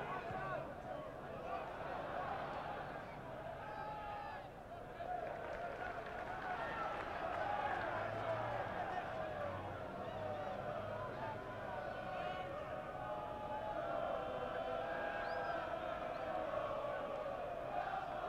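Football stadium crowd: a steady hubbub of many voices shouting and calling during open play.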